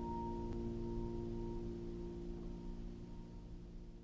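Background music: a final piano chord struck just before, left ringing and slowly dying away.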